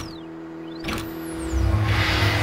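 Sound-designed logo sting: two sharp hits about a second apart with whooshing pitch glides over a held tone, and a deep rumble swelling in near the end.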